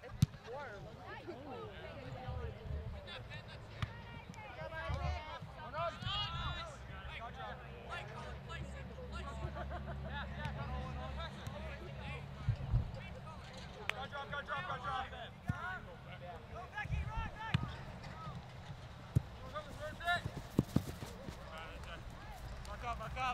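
Indistinct shouts and calls of players and spectators across a soccer field, with a few sharp knocks, the loudest just at the start.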